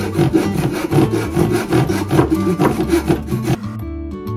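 Hand saw cutting through a wooden plank in quick, even back-and-forth strokes, about four or five a second, stopping shortly before the end, with background music underneath.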